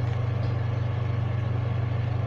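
A steady low hum over a background hiss.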